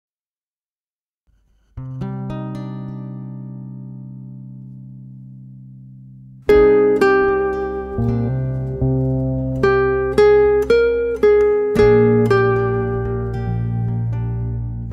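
Instrumental guitar music. After a moment of silence, a low chord rings and slowly fades. About six and a half seconds in, a plucked guitar melody begins over bass.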